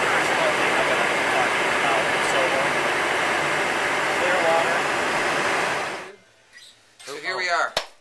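Loud, steady engine and air noise inside the cabin of a small plane, with faint voices under it. The noise cuts off suddenly about six seconds in, and a brief voice follows near the end.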